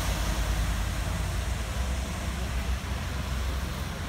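Steady road and traffic noise from vehicles on a wet motorway, with a low, uneven rumble of wind buffeting the microphone.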